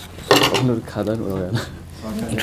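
A plate set down on a wooden table, a short sharp knock about a quarter of a second in, followed by voices talking.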